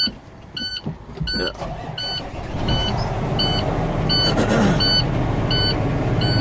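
Repeated electronic beeping, about three beeps every two seconds, while a semi-truck's diesel engine comes to life about a second in and settles into a steady idle.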